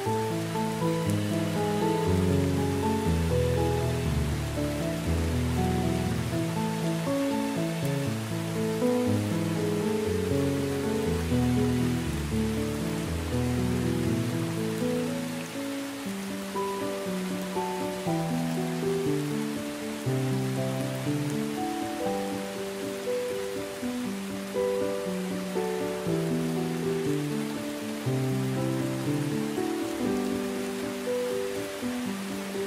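Steady rain falling on a surface, mixed with slow, calm instrumental music of long held notes. The deepest bass notes fall away about halfway through, leaving mid-range notes over the rain.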